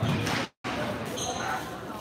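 A squash ball struck by a racquet and hitting the court wall near the start, a sharp hit. The sound cuts out completely for a moment about half a second in.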